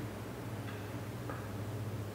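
Quiet room tone with a steady low hum and a couple of faint clicks.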